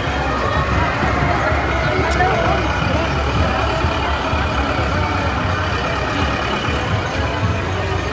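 Crowd voices chattering over a steady low engine rumble from a slow-moving procession float vehicle.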